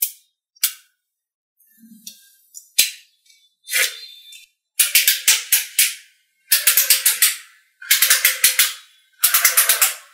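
Small magnetic balls clicking as they snap together. A few single clicks come first; then, from about five seconds in, four bursts of rapid clicking, each about a second long, as blocks of balls join into long bars.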